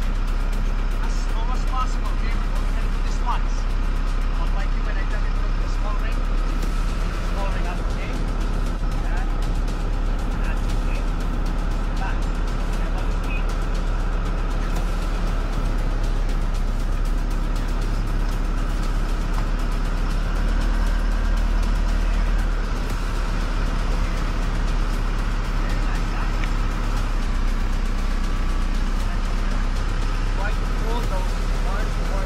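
Steady low drone of a moving car's engine and tyres, with faint short chirps over it.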